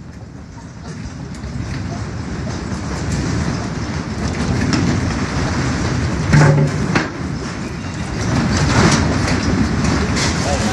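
Earthquake rumble: a deep, train-like roar that builds steadily in loudness, with a few sharp rattles or knocks about six and a half and nine seconds in.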